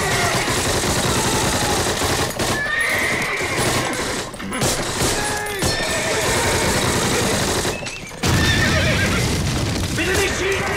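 Horses neighing and whinnying, several rising-and-falling cries, over a dense din of battle noise from a war-drama soundtrack.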